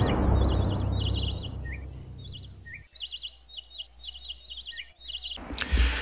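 Jungle-style ambience of birds chirping in short repeated trills over the fading low rumble of drum hits. A brief rush of noise comes near the end.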